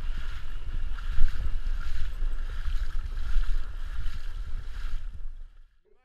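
Wind buffeting the microphone in gusts over the wash of shallow water, cutting off suddenly about five and a half seconds in.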